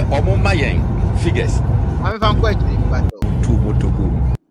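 Men talking in a played-back radio clip over a loud, steady low rumble, with two brief dropouts in the sound.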